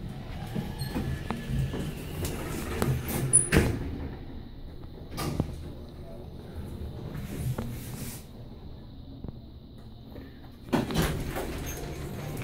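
Otis passenger elevator car in operation: a low steady hum with a few sharp clicks and knocks, and a louder stretch of noise starting near the end.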